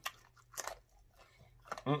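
Close-miked chewing of neck bone meat and gristle: a few soft, wet mouth clicks and smacks, a small cluster of them about half a second in. A hummed "mm" of enjoyment begins near the end.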